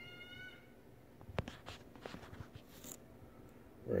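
A short, steady high squeak right at the start, then a scatter of light clicks and knocks from a handheld camera being picked up and moved.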